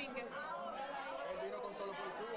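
Faint, indistinct chatter of several people talking at once, no words clear.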